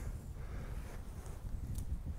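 Faint outdoor ambience: a low rumble of wind buffeting the microphone, with a soft tick near the end.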